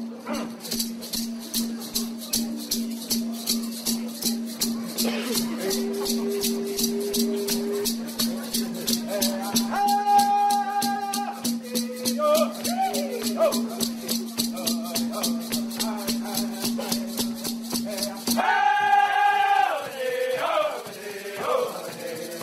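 Haudenosaunee social-dance accompaniment: a water drum and cow-horn rattles keeping a fast, even beat, with male voices singing short phrases over it. At about 18 seconds the steady beat breaks off and the singing comes in strongly.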